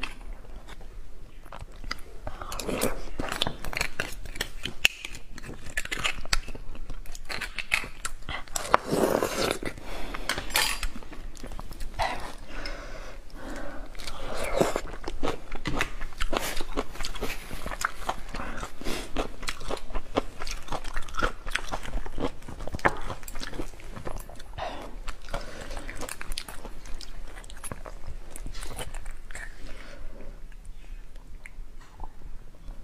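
A woman chewing spicy beef bone marrow, close-miked, with a continuous run of wet mouth smacks and sharp clicks.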